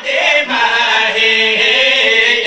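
A man chanting a qasida, a devotional poem recited in a melodic, sung style. After a brief break at the start he holds one long, steady note.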